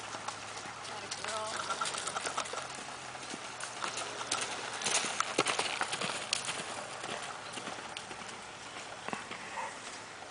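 Horse's hooves striking a dry dirt arena: an uneven run of hoofbeats as the horse is ridden at a lope and through a spin. They are loudest about five seconds in, when the horse works close by.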